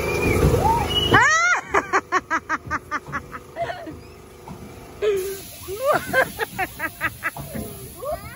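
High-pitched laughter in quick runs of about five 'ha's a second, one starting about a second in and another later on. A low rumble fills the first second.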